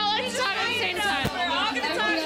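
Several women talking over one another in a lively group chatter, with a short low bump a little past the middle.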